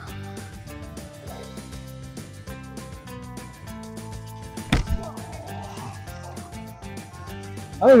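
Background music playing, with a single sharp crack of a golf club striking a ball off a turf hitting mat a little past the middle.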